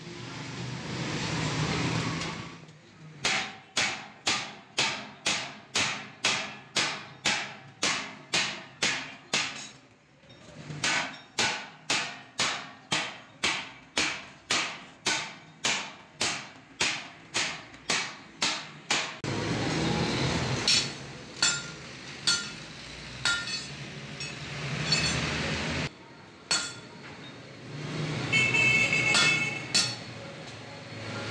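A hammer striking a welded sheet-steel mixer drum, about two sharp metallic blows a second for some sixteen seconds with a brief break in the middle. Before the hammering there is a stretch of arc-welding crackle, and after it come irregular knocks and rougher metal noise.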